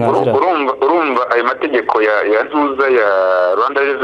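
A person talking continuously: speech only.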